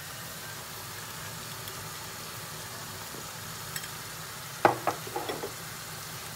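Sliced onions frying in palm oil in a pan: a steady sizzle, with a few sharp knocks a little before the end.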